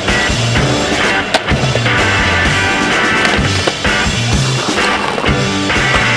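Music soundtrack over the sound of a skateboard rolling on concrete. There is one sharp clack of the board about a second and a half in.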